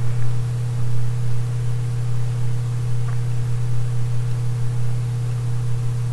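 Steady low electrical hum with a light hiss, unchanging.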